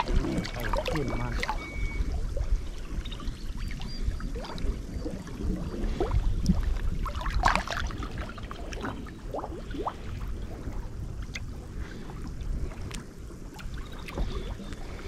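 Lake water lapping and sloshing right at the microphone, with small scattered splashes over a low rumble of wind and water; one larger splash about halfway through.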